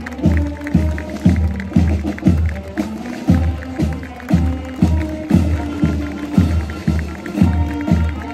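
Marching brass band playing a march: a melody on trumpets and other brass over a bass drum beating about twice a second.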